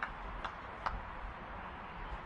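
Three short sharp clicks in the first second, a little under half a second apart, over a steady background hiss.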